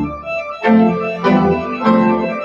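Church organ playing sustained chords: a held chord breaks off at the start, then new chords come in about every two-thirds of a second.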